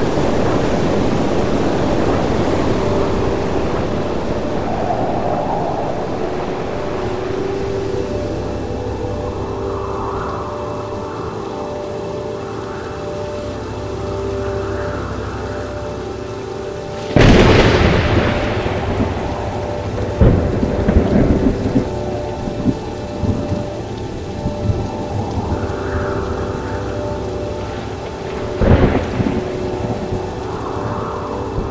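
Thunderstorm on a film soundtrack: steady rain, with a sudden loud thunderclap about halfway through that trails off into crackling rumbles, and another crack near the end. A drone of steady held tones runs underneath.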